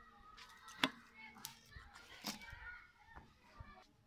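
Two sharp taps about a second and a half apart as a roti is handled and lifted on a flat nonstick pan, over faint voices in the background.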